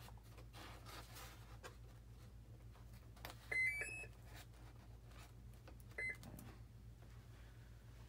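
The electronic speed controller of an electric ducted-fan RC jet sounds its power-up tones through the fan motor as the flight battery is connected. There is a short rising three-note tune about three and a half seconds in, then a single beep near six seconds, with a few faint clicks from the connector being handled.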